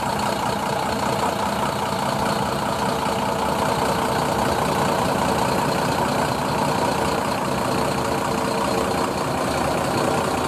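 Diesel tour coach idling steadily: a constant engine drone with a faint steady whine on top.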